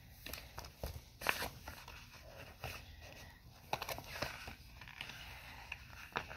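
Soft, scattered rustles and light taps of a paper sticker book being handled and its pages moved.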